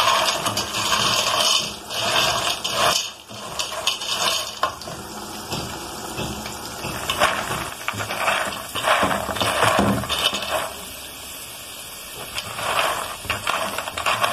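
Dry penne frying in oil, stirred with a silicone spatula in a metal pot: the pasta pieces rattle and scrape against the pot in repeated bursts, with a quieter lull near the end.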